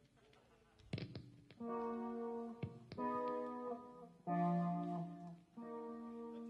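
A band's amplified instrument plays four held, organ-like chords, each lasting about a second, with a few sharp plucks or clicks among the first ones.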